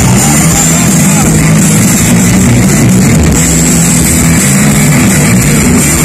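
Loud live rock band playing in an arena, recorded close to full level on a phone microphone, with crowd voices mixed in.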